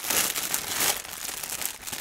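Clear plastic packaging bag crinkling as it is handled and opened by hand, louder in the first second.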